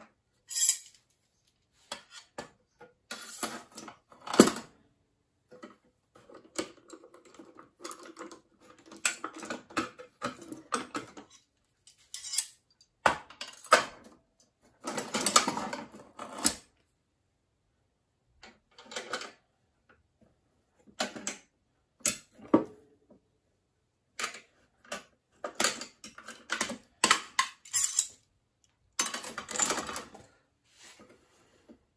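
Metal clamps and clamp blocks on a wooden stock-bending jig being handled and loosened: irregular clinks, clicks and knocks of metal on metal and wood with short pauses, the loudest a sharp knock about four seconds in.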